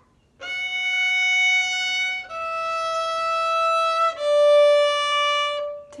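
Violin playing three long bowed notes stepping down the G major scale (F sharp, E, D), each held just under two seconds.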